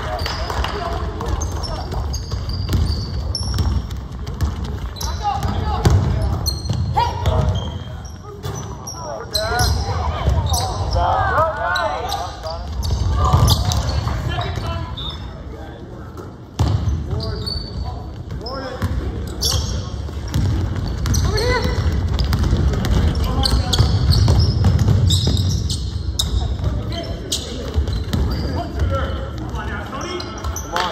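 A basketball bouncing repeatedly on a hardwood gym floor during play, with short high squeaks of sneakers on the court and indistinct calls from players and onlookers.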